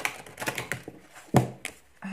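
A handful of short, sharp clicks and taps from a deck of tarot cards being handled on a table, with one louder knock about one and a half seconds in.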